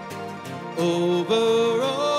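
Live worship music: a man singing with acoustic guitar accompaniment. The voice comes in louder about three-quarters of a second in and holds long notes.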